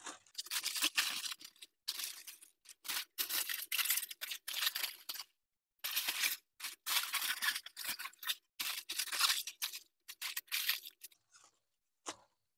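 Heavy-duty aluminum foil crinkling and crumpling in irregular bursts with brief pauses, as gloved hands fold and press it tightly around a smoked pork butt.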